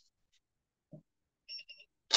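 Near silence broken by a faint knock, then three short electronic beeps in quick succession near the end.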